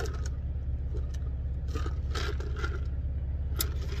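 Steady low hum of an idling car heard inside the cabin, with a few soft slurps and cup-and-ice rustles from sipping soda through a straw.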